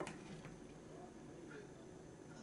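A plastic measuring scoop clicks once sharply against the rim of a saucepan as hot sauce is scooped out, followed by faint quiet kitchen sounds.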